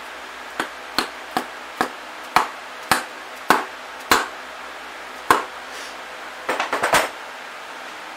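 Soft-faced mallet blows on the hub of a yard-wagon wheel, knocking a bearing into it. About ten single sharp knocks come roughly half a second apart, then a quick flurry of lighter taps near the end.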